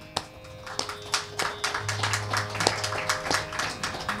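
Carnatic hand drums, mridangam and kanjira, playing crisp strokes over a steady drone. After a single early stroke, the strokes come several a second from about a second in.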